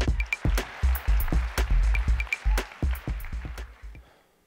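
Electronic intro music with a fast beat of kick-drum hits and high pinging tones over a rising wash, dying away near the end.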